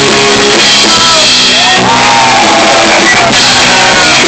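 A rock band playing live, loud, with electric guitars, drums and shouted, sung vocals.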